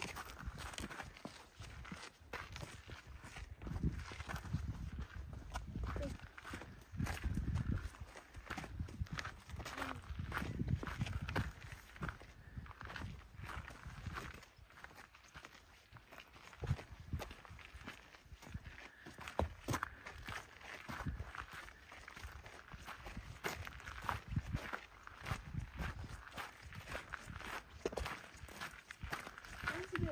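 Footsteps of people walking on a gravelly, rocky trail: irregular steps on grit and stone, with repeated low rumbling noise underneath.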